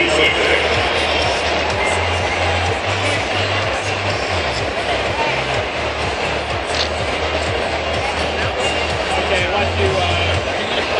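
Music played over the ballpark's public-address system, with a steady bass line of changing low notes, under a constant chatter of crowd voices.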